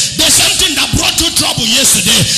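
A man's loud, impassioned, chant-like preaching voice through a handheld microphone, carried with a rhythmic, rap-like rise and fall over background music.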